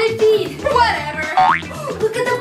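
Comic cartoon sound effects over background music: a falling swoop about half a second in, then a fast rising whistle-like glide about a second and a half in.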